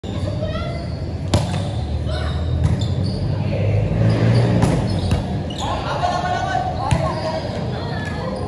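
A volleyball being struck during a rally: several sharp slaps, the loudest about a second in, echoing in a large gym hall. A player's raised voice calls out in the second half, over a steady low hum.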